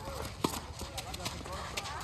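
A tennis ball struck with a single sharp pop about half a second in, followed by lighter knocks of quick footsteps on the hard court.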